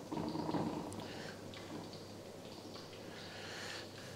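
Breaded pork cutlets frying in hot oil in a pan: a faint steady sizzle with a few small crackles.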